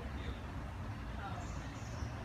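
Street ambience: a steady low rumble of traffic with faint distant voices.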